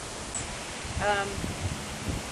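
Steady outdoor background hiss, with a brief spoken "um" about a second in.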